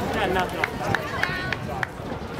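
Background voices of spectators and athletes talking and calling out at an outdoor track, with a few short sharp clicks in the second half.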